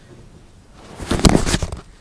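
Handling noise from the camera: a short burst of rustling and knocks about a second in, lasting under a second.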